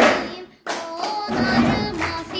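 Children's cup rhythm: plastic cups knocked on wooden desks and hands clapping, keeping time with a Turkish folk song with singing. The music drops out briefly about a quarter of the way in, then comes back with a knock.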